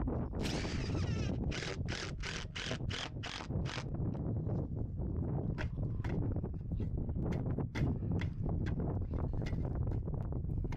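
Cordless impact driver driving screws to fasten a new wooden hull plank: one run of just under a second, then about seven short bursts in quick succession. After that come light knocks and clicks as someone climbs down a ladder, with wind on the microphone.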